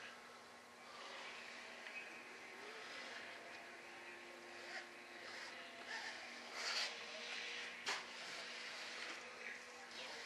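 Faint rustling and handling of fiberglass cloth being smoothed by gloved hands over a foam tail part. Underneath is a steady low hum, and there is a sharp click near eight seconds.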